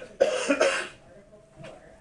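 A person coughing: a quick run of two or three coughs in the first second.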